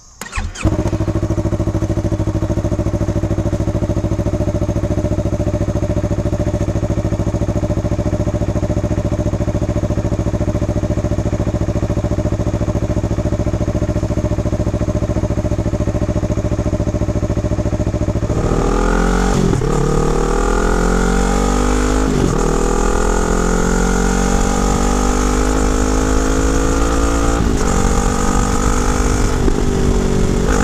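2017 Yamaha R3's parallel-twin engine through an Akrapovic slip-on exhaust, with the catalytic converter still fitted. It starts suddenly about half a second in and idles steadily. About two-thirds of the way through it pulls away, the revs rising again and again with breaks between them as it shifts up through the gears.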